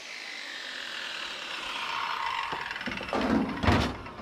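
Circular saw blade coasting down after a cut through aluminium downspout, its whine falling steadily in pitch. Then a few knocks and two loud clunks as the saw is set down in a utility vehicle's cargo bed.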